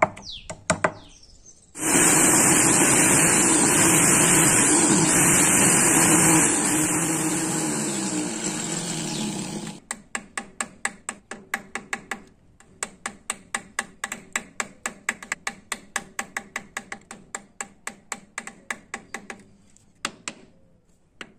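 A loud, steady whirring noise lasts about eight seconds and cuts off suddenly. It is followed by a steel chisel on a vise-clamped block of wood being struck over and over with a hammer, at about three to four blows a second.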